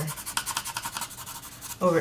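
Soft 8B graphite pencil scribbling rapidly back and forth on paper, a fast run of short, even scratching strokes as it colours over the drawn lines.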